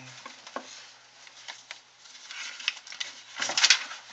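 Sheets of paper rustling and sliding on a desk as a fresh sheet is fetched and laid down, with a few light taps. The loudest rustle comes near the end.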